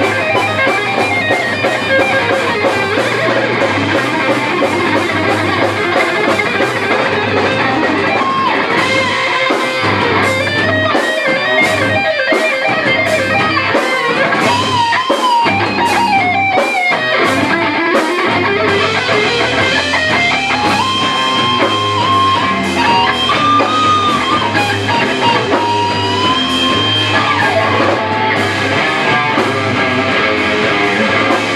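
Heavy metal band playing live, with distorted electric guitars and drums. In the middle the low end drops out in short stop-start gaps. Later a note slides steadily up in pitch.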